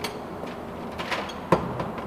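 Hand tools being rummaged through and a wrench set lifted out: a few light metal clicks and clinks, with one sharp clack about one and a half seconds in.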